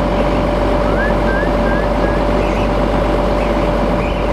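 A steady mechanical drone with a constant hum, unchanging throughout, like machinery or an engine running nearby. A few faint short rising calls or voice sounds come through about a second in.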